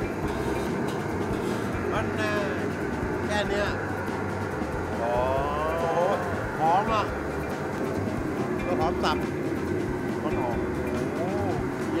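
Steady low roar of a commercial kitchen's gas wok burner, with short spoken exclamations over it a few times.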